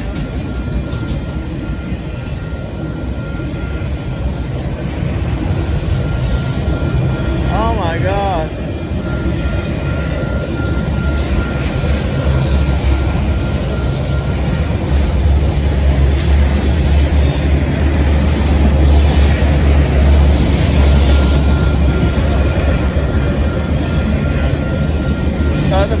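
Union Pacific auto-rack freight train rolling past at speed over a grade crossing: a continuous rumble and clatter of wheels on rail that grows louder, heaviest about two-thirds through. A steady high ringing from the crossing signal's bell runs over it, drowned out while the rumble peaks.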